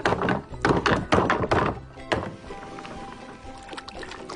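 A quick run of wooden knocks and thuds over the first two seconds, like a wooden doll's house being bumped as it is carried, with background music throughout.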